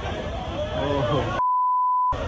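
People talking, then about one and a half seconds in the sound cuts out and a steady high beep tone replaces it for under a second: a broadcast censor bleep covering a spoken word.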